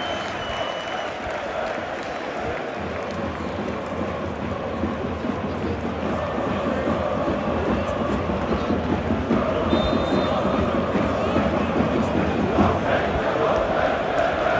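Football stadium crowd of thousands: a dense, continuous mass of voices with no single voice standing out, growing louder from about halfway through.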